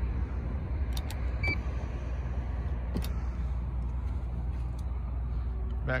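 Steady low rumble in the car, with a few light clicks and a brief high electronic beep about a second and a half in.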